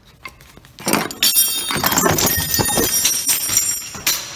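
A loud clattering crash of hard objects falling and knocking together, with a high ringing. It starts about a second in and goes on for about three seconds.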